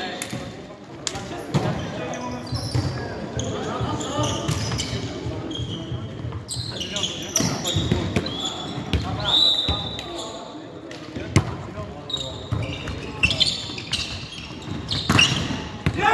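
Indoor volleyball rally: sharp slaps of the ball off players' hands and arms, high squeaks of shoes on the wooden court, and players calling out, all echoing in the hall.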